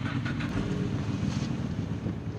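Snowmobile engine idling with a steady low drone.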